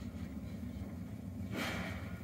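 Low steady rumble of a car, heard from inside the cabin, with a brief hiss about one and a half seconds in.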